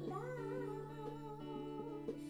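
Live band music: a woman's voice holds one long sung note with vibrato, sliding up into it at the start, over sustained electric guitar chords.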